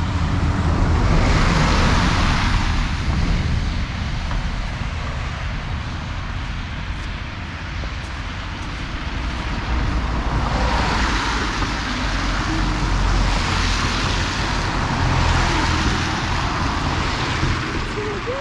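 Road traffic on a wet, slushy road: a steady noise of tyres that swells as cars pass, about a second in and again from about ten seconds in, over a constant low rumble.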